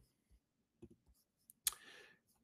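A few faint computer mouse clicks, the loudest near the end, deleting a page in a web application.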